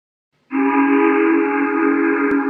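Steam locomotive whistle: one long steady blast of several notes sounding together, starting suddenly about half a second in.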